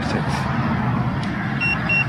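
A handheld breathalyzer giving two short, high-pitched beeps in quick succession near the end, over steady street background noise.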